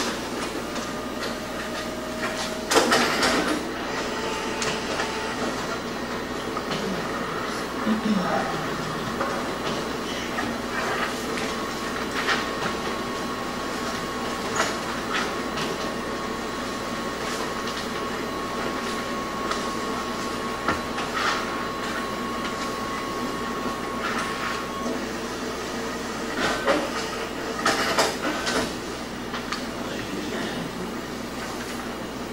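Meeting-room ambience: a steady hum of room noise, with scattered clicks, knocks and paper rustles from people handling documents at the table, the biggest about three seconds in and near the end.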